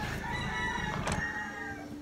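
A rooster crowing once, a single drawn-out call that fades out near the end, with a brief sharp click about a second in.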